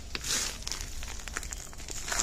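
A bag of blasting sand being handled, giving faint, irregular rustling and crinkling.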